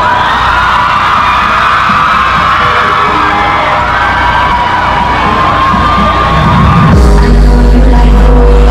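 Live dancehall music over a stage PA, with crowd whoops and yells; about seven seconds in, a heavy bass beat drops in.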